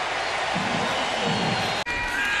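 Stadium crowd cheering and applauding in response to a touchdown, heard through a TV broadcast; it breaks off abruptly near the end.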